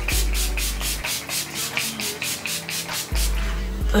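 Fine-mist spray bottle of makeup setting spray being spritzed at the face in quick repeated puffs, about six a second, stopping a little over three seconds in.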